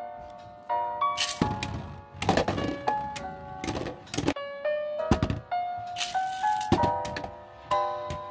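Background music with a stepped melody, over irregular clacks and rattles of spinning Lego-brick tops knocking into each other in a plastic Beyblade stadium.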